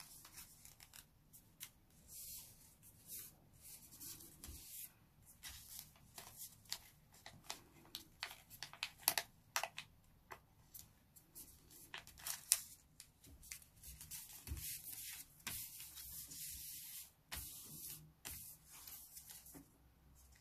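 A sheet of origami colour paper being handled by hand, opened out, pressed and creased: faint, irregular rustling and scraping, with a few louder swishes about nine and twelve seconds in.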